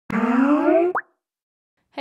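Skype's intro audio logo: a synthetic tone gliding upward for just under a second, ending in a quick rising bloop, then silence.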